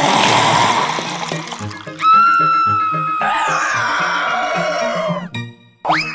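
Cartoon background music with a repeating low bass line. Over it comes a rush of noise in the first two seconds, then long high held cries that fall slightly in pitch and cut off a little after five seconds in.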